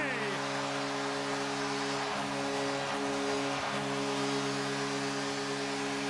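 Arena goal horn sounding one long, steady chord of several low tones over a cheering crowd, marking a home-team goal.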